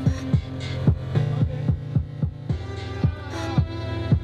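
Electronic beat playing, a drum-machine kick about four times a second under a deep steady bass line and synth tones.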